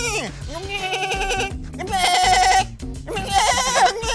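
A man imitating an excited goat: a string of wavering, bleating cries, one after another, over background music, with laughter about a second in.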